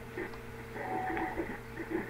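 Faint, indistinct voices over a steady low hum, with a brief steady tone about halfway through.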